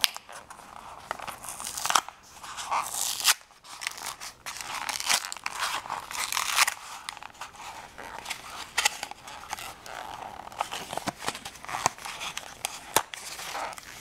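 Face powder packaging being handled and pried open by hand: irregular crinkling, scraping and tearing with sharp clicks.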